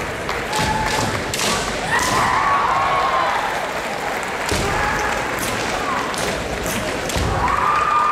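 Kendo fencers' kiai shouts mixed with repeated sharp knocks of bamboo shinai strikes and stamping feet on the wooden floor from bouts in progress.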